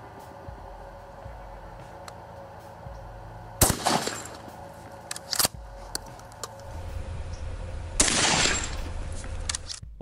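A single 12-gauge shot from a Benelli Nova pump shotgun firing a solid brass slug: one loud sharp report that echoes briefly, about three and a half seconds in. A smaller sharp crack follows about two seconds later, and near the end a longer rush of noise lasts about a second and a half.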